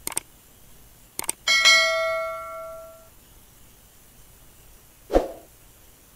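Subscribe-button animation sound effects: a click at the start, two quick clicks about a second in, then a bell ding that rings out and fades over about a second and a half. A short pop comes about five seconds in.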